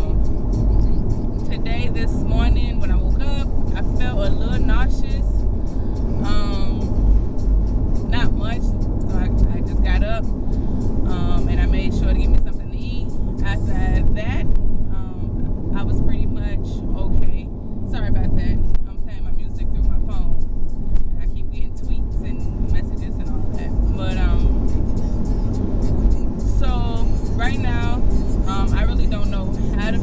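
Steady low rumble of a car heard from inside the cabin, with a voice and music over it.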